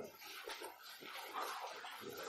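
A dog whimpering faintly.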